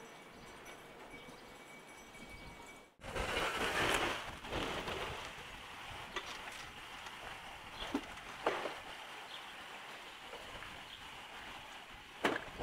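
Steady outdoor background hiss with no speech. The sound changes abruptly about three seconds in, becoming louder and fuller for a second or so, and a few sharp knocks or clicks come later.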